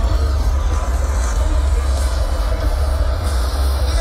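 Live concert music played over a stage PA system, picked up by a phone in the crowd, with heavy bass far louder than the rest.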